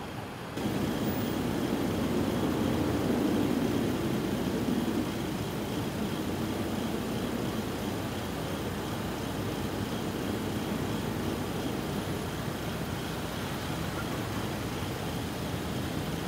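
Vehicle noise on a street. It starts abruptly about half a second in, as a rumble that swells over the next few seconds, eases after about five seconds and then runs steady.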